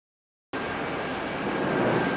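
After silence, steady indoor room noise of a buffet restaurant cuts in abruptly about half a second in, with a faint, steady high whine.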